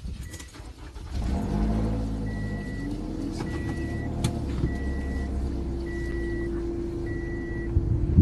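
A car's engine starts about a second in and settles into a steady idle. A warning chime beeps in short, evenly spaced tones, about one every second and a bit.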